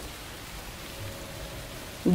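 Faint, steady rain falling, an even hiss.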